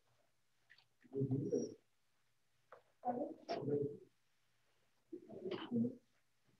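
A person's voice making three short vocal sounds, each about a second long, about two seconds apart, with no words that can be made out.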